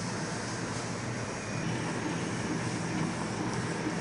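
Mini UV flatbed printer running while it prints: a steady mechanical hum and whir as the print carriage with its UV curing lamp passes over the phone case.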